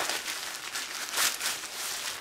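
A plastic bag and a fabric stuff sack crinkling and rustling as they are handled and pulled apart, loudest about a second in.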